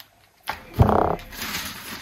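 A large plastic bottle of orange squash set down on a counter with a thud just under a second in, followed by the rustle of grocery packaging being handled.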